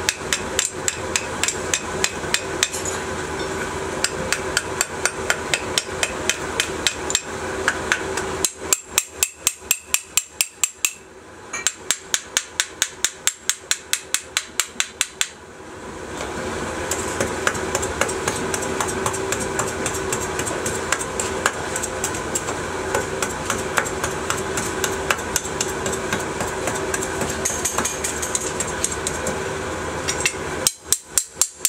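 A metal hand tool tapping rapidly on a freshly sand-cast aluminium part, about three sharp strikes a second, with the strikes standing out most in the middle stretch. A steady mechanical hum runs underneath, stops for several seconds in the middle and then starts again.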